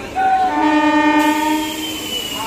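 Electric local train's air horn sounding one blast: a steady chord of several notes lasting about a second and a half, then fading.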